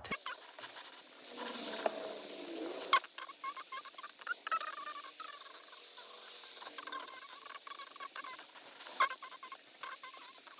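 Yarn rustling and scraping over a crochet hook as a foundation chain is worked stitch by stitch: soft, small scratchy ticks, with a sharp click about three seconds in and another near nine seconds.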